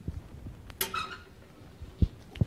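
Drawing on a lecture board: a short squeak of the writing tip on the board about a second in, amid faint light knocks.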